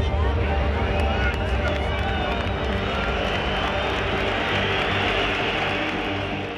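Large stadium crowd cheering and chanting at a steady, loud level, thousands of voices blending into one roar.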